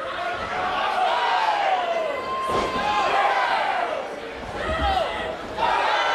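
Wrestling crowd shouting and cheering, with one sharp impact thud about halfway through.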